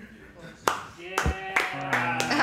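Two sharp knocks about half a second apart, then held notes from acoustic guitar and pedal steel guitar begin ringing and build, as the players noodle between songs.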